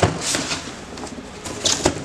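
Cardboard boxes being handled: flaps and a die-cut cardboard insert scraping and rustling. There is a sharp knock at the start and a couple more near the end.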